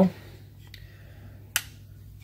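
A single sharp plastic click about one and a half seconds in, with a fainter click before it, from the steering-column switch unit being handled, over a low steady hum.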